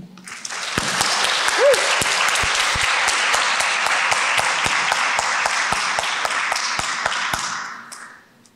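Audience applauding after a poetry reading, with individual claps audible, building up about half a second in, holding steady, and dying away near the end.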